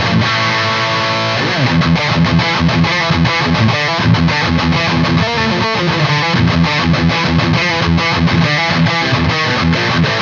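Electric guitar played through a Lichtlaerm King in Yellow overdrive pedal into a Mezzabarba amp's high-gain channel three, the pedal pushing the amp to tighten up its loose low end: a heavily distorted metal riff. A chord rings out and slides down about a second and a half in, then a fast chugging rhythm follows.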